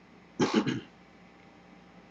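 A man coughing, two quick coughs run together about half a second in.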